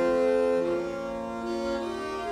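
A consort of viols playing slow polyphonic music: several bowed parts holding overlapping notes that change about every half second to a second.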